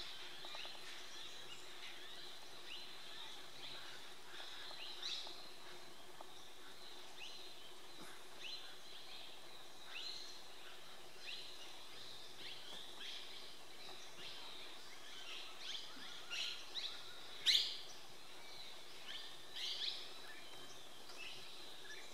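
Wild birds calling: a run of short, falling chirps about once a second, thicker and louder in the second half with one loud call about three-quarters of the way through, over a faint steady high tone.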